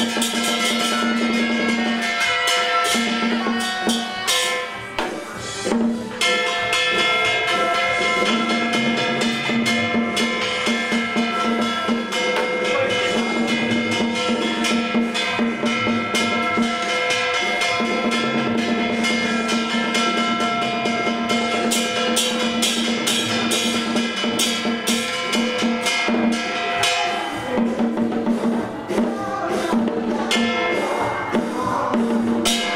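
Taoist ritual music: a small drum beaten in quick strokes along with other percussion, under a melody held on long sustained notes. The held notes break off briefly about five seconds in and again near the end.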